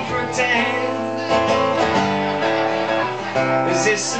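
Acoustic guitar strummed live on stage, the chords changing every second or so.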